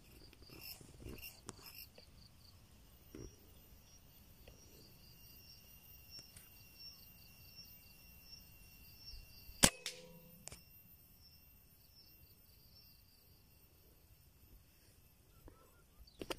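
A single shot from a 5.5 mm PCP air rifle: one sharp crack nearly ten seconds in with a short ringing after it, then a fainter click under a second later. Insects chirr steadily in the background.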